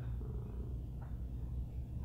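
Quiet room tone: a low, steady electrical hum with no distinct event.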